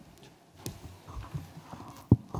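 A few soft, irregular knocks and a sharp click over quiet room tone, the sort of handling noise made on a conference table between speakers.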